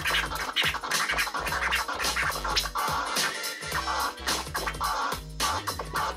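Vinyl records being scratched on turntables: quick back-and-forth scratches chopped in and out with the mixer fader, over a looping drum and bass beat.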